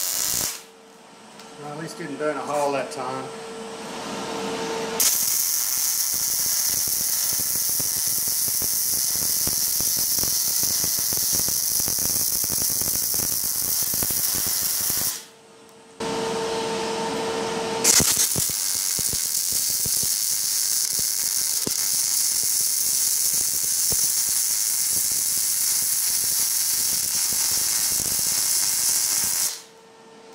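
MIG welding steel: two runs of steady arc crackle and hiss, the first starting about five seconds in and lasting about ten seconds, the second starting after a short pause and stopping just before the end. Between the runs a steady hum is heard.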